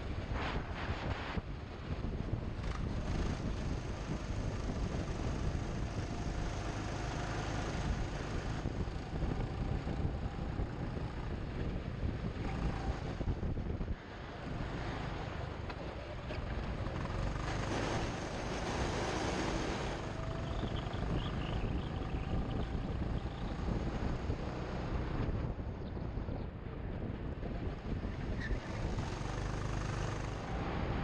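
Rushing wind on an action camera's microphone as a go-kart drives at speed, with the kart's motor and tyres on the track underneath. A faint whine rises and falls a few times.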